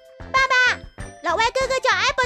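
A young girl's high-pitched voice speaking a short line in Mandarin, over light background music.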